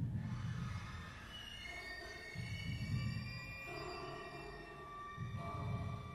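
Free-improvised contemporary music from an acoustic ensemble: long held high tones, with low swells that rise and fade about every two to three seconds.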